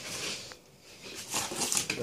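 Sheets of paper taped to a plastic placemat rustling as they are handled and laid down on a counter, louder near the end.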